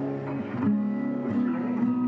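Acoustic guitar notes ringing out: a held chord, with new notes picked about two-thirds of a second in and again past the middle.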